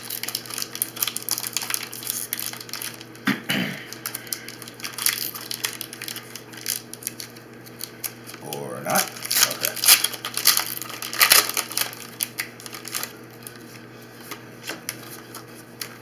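Foil-lined wrapper of a Pokémon TCG booster pack being torn open and crinkled by hand. The crackling goes on throughout and is loudest about nine to eleven seconds in.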